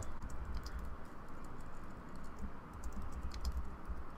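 Typing on a computer keyboard: a quick, irregular run of light keystroke clicks over a low steady hum.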